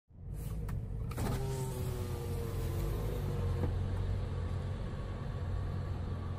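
A car's power window motor whining as the side window glass lowers, starting with a few clicks and running for about two seconds, over a steady low engine rumble.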